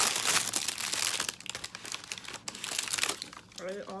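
Thin plastic bag crinkling loudly as it is handled and pulled up, in a dense run of crackles for about three seconds before it stops.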